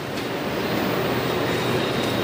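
A steady, even rushing background noise with no speech, holding at one level throughout.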